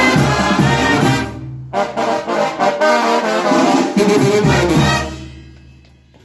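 A Mexican banda brass band playing: trombones, tuba, clarinets and trumpets over drums, with a steady low beat. The music stops briefly about a second and a half in, comes back, and dies away over the last second.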